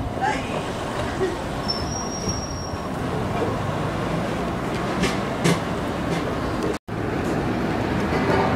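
Steady roar of city road traffic, with a brief high whistle about two seconds in; the sound drops out for an instant near the end.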